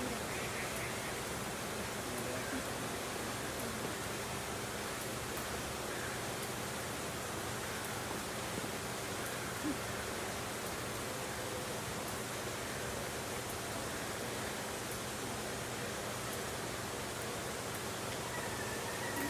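Steady outdoor background hiss with faint, indistinct voices of distant people.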